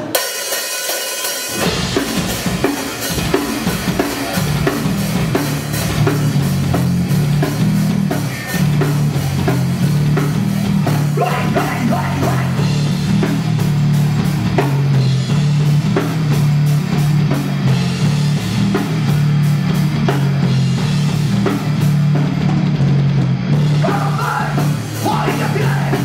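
Live industrial metal band playing the instrumental opening of a song: after a brief thin-sounding intro, the drum kit, distorted guitar and bass come in together about a second and a half in, with fast, dense drumming under a heavy bass riff.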